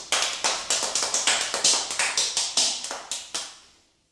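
A quick run of sharp claps, about four or five a second, growing softer and stopping near the end.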